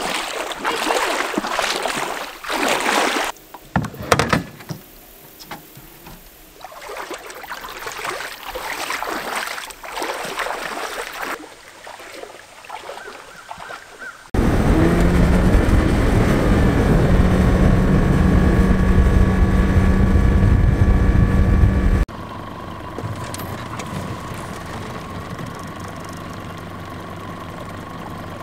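Water sloshing and splashing in a shallow creek with a few knocks. Then, from about halfway through, a small outboard motor runs loud and steady for about eight seconds, and after a sudden change it goes on more quietly with a thin steady whine.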